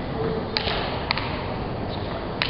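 Celluloid table tennis ball striking rubber bats and the table during a rally. There are two sharp clicks about half a second apart around the middle and a fainter one near the end, over the steady background noise of a large hall.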